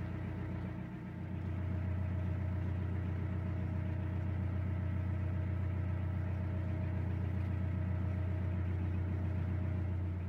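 Narrowboat's diesel engine running steadily at low cruising revs, a low, even hum that dips briefly about a second in and then settles a little louder.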